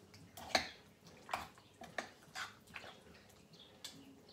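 Marinated chicken and its sauce being stirred together in a pan: soft, wet squelches at irregular moments, about half a dozen in all.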